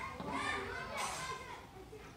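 Faint background voices of children, and a short chalk stroke on a blackboard about a second in.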